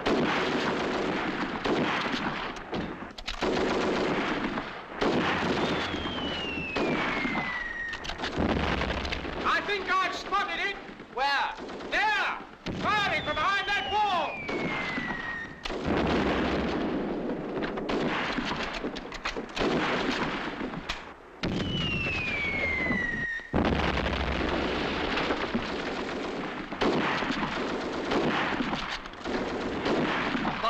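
Battle sound effects from a wartime film soundtrack: continuous rifle and machine-gun fire with shell explosions. Three descending whistles of incoming shells come about six, thirteen and twenty-two seconds in, and there is shouting around ten seconds in.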